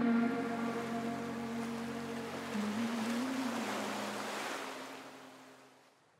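Ocean waves washing on a sandy shore over a sustained, slow ambient music pad, both fading out to silence near the end.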